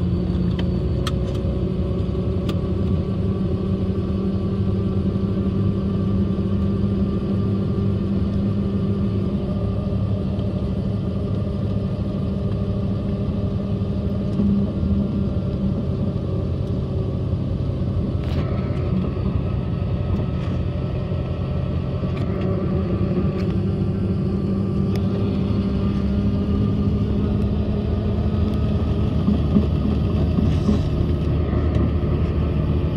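Robinson R44 helicopter's six-cylinder Lycoming piston engine and main rotor running steadily on the ground before take-off, heard from inside the cabin.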